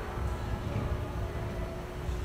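Low steady rumble of room background noise with a faint steady hum, picked up by the camera while no one is speaking.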